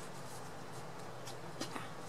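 Faint rustling and a few light taps over a steady quiet hiss, like cards or paper being handled.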